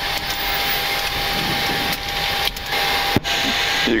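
Steady rushing air noise in the cockpit of a Boeing 737-800 waiting for engine start, with a faint steady high tone and a single click about three seconds in.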